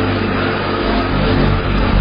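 Many voices of a congregation praying aloud at once, blending into a dense murmur, over a steady low sustained music drone.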